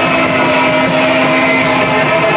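Garage-punk band playing loud through amplifiers, with distorted electric guitar holding a droning chord over a dense, noisy wash.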